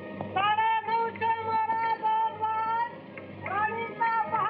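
A high voice singing one long held note: it rises into the note, holds it with a slight waver for a couple of seconds, then starts another rising phrase near the end.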